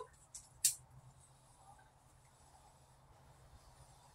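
Two short clicks within the first second, the second louder, then quiet room tone with a faint steady low hum.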